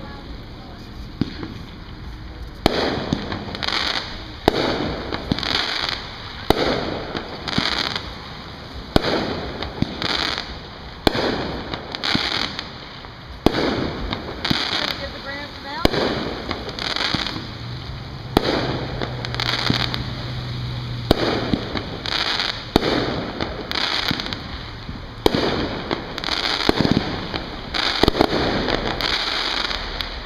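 Aerial fireworks shells bursting one after another in a continuous display, roughly one bang a second, each bang trailing off briefly.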